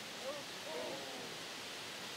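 Steady, faint rushing of whitewater rapids, with two brief faint calls of distant voices within the first second.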